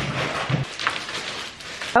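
Plastic wrap crinkling and rustling against cardboard as a framed print is lifted out of its shipping box, with a couple of low thuds near the start.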